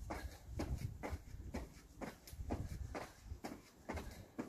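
Trainers landing on stone paving slabs during star jumps, a soft rhythmic thud-and-scuff about twice a second.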